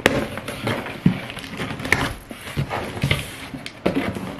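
A cardboard shipping box being opened by hand: packing tape crackling as it is pulled, and cardboard flaps rustling, with a few sharp irregular snaps.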